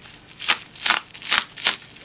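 Plastic packet crinkling and crackling as hands pull at it to tear it open, in four short bursts.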